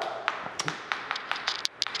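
Chalk tapping and scratching on a chalkboard as a word is written by hand: a quick, irregular run of short taps.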